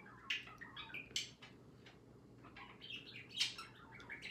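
Faint, intermittent bird chirps, short and scattered, with a few brief sharp clicks.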